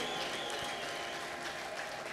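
Congregation clapping, a steady spread of applause that slowly fades.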